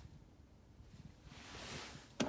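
Very quiet car-cabin room tone, with a soft hiss that swells and fades over the last second.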